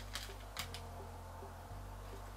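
Soft background music with a low bass note that changes about once a second, under a few faint clicks and crinkles from a small plastic bag being handled.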